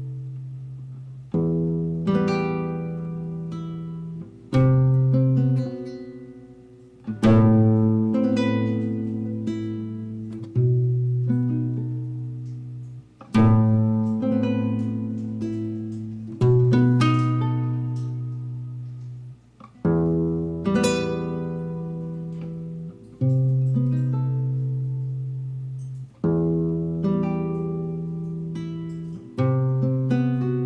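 Nylon-string classical guitar played fingerstyle in a slow piece: a chord with a low bass note is plucked about every three seconds, and each is left to ring and fade before the next.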